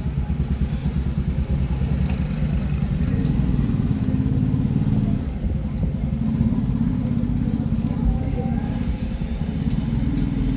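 Street ambience in a narrow lane dominated by a steady low engine rumble from a nearby motor vehicle running, with indistinct voices in the background.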